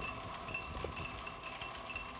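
Freewheeling pawls in the wheels of a Planet Jr BP1 walking tractor tinkling with light, chime-like clicks a few times a second. Underneath runs the steady whir of an electric motor and two-stage chain drive turning the wheels at full speed with no load.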